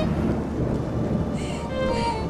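Steady low rumble and hiss under quiet background music, with a woman's short breathy sob about a second and a half in.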